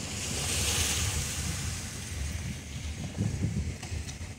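Low rumble of a car rolling slowly, heard from inside the cabin, with a rushing hiss that swells in the first second or so and then fades.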